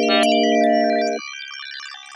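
Synthesizer music holding a sustained low chord, with a rapid run of short electronic bleeps of a computer-terminal sound effect. The chord cuts off abruptly about a second in, leaving fainter, sparser bleeps.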